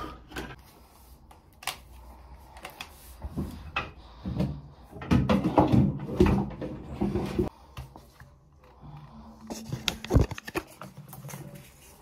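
Handling noise from household objects being picked up and moved about: scattered knocks, bumps and rustles, busiest and loudest in the middle.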